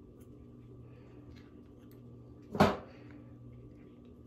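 Quiet handling of a leathery ball python eggshell: faint snips and rustles as small blunt scissors cut it open and fingers peel it back. One short, sharp sound about two and a half seconds in stands out above the rest.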